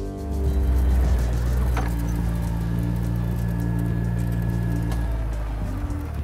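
Background music over a John Deere Gator utility vehicle driving, its engine running steadily with a low rumble.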